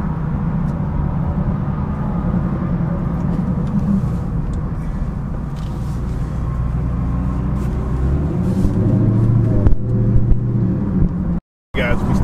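Dodge Charger Hellcat's supercharged V8 and tyre noise heard from inside the cabin while cruising on the highway. The engine note rises about eight seconds in as the car picks up a little speed.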